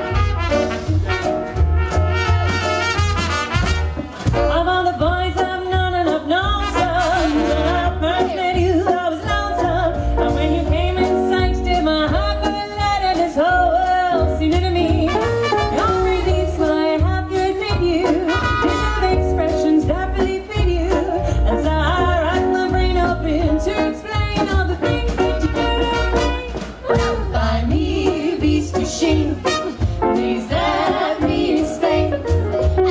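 Live swing band with brass, trumpet to the fore, accompanying three women singing in close harmony.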